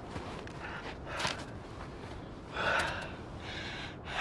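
A man breathing hard and winded from a steep uphill hike, with two audible breaths: a short one about a second in and a longer one near three seconds.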